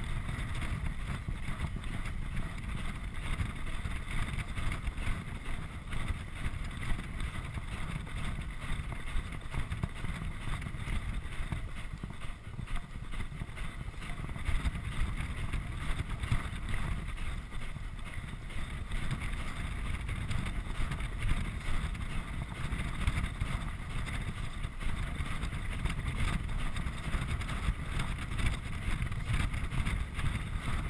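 Wind rushing over a GoPro chest camera's microphone on a galloping rider, a steady low rumble, with the Thoroughbred's hoofbeats on the dirt track underneath.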